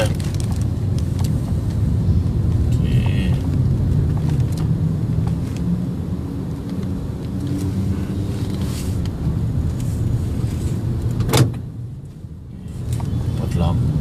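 Steady low rumble of a car's road and engine noise heard from inside the moving car. About eleven seconds in there is a sharp click, after which the rumble briefly drops quieter for about a second before returning.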